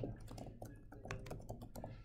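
Computer keyboard typing: a quick, faint run of keystrokes, with a sharper click at the very start.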